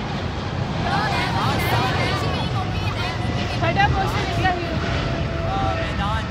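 Voices talking and calling out in short bursts over a steady low rumble.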